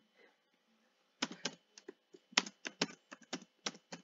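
Keystrokes on a computer keyboard: after about a second of quiet, a quick run of separate key presses, several a second, as text is typed.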